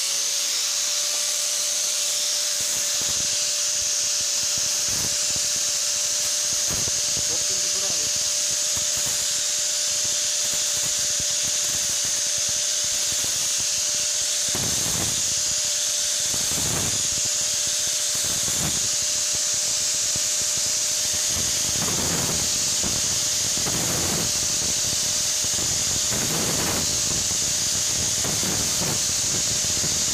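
Angle grinder with a flap disc running steadily: a constant motor whine with a strong high hiss. In the second half, short surges of added noise come about every two seconds.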